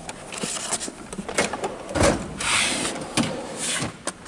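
Steel tool chest drawers being shut and pulled open on their slides: scattered clicks and rattles of tools, a knock about two seconds in, then about a second of sliding rush.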